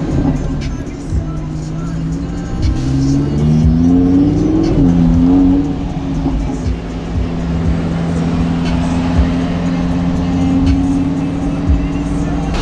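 Lamborghini Huracán's V10 engine heard from inside the cabin while driving: its note climbs for a couple of seconds, dips briefly near the middle and climbs again, then settles into a steady drone at cruising revs.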